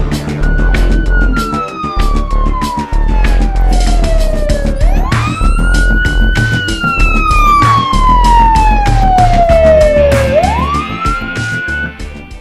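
A wailing siren over loud music with a heavy beat: each cycle rises quickly to its top pitch and then falls slowly for about four seconds, twice, and a third rise comes near the end.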